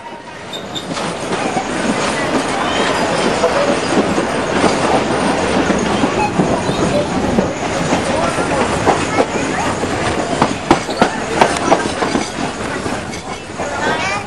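Wheels and carriage of a 3 ft 6 in narrow-gauge train running on the track, heard from a passenger carriage: a steady rumble that builds in the first two seconds, faint wheel squeal on the curve and a run of sharp rail clicks later on.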